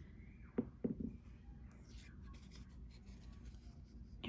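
Quiet handling of a strip of white paper as it is picked up, with faint rustling. There are two brief vocal sounds from a person about half a second to a second in.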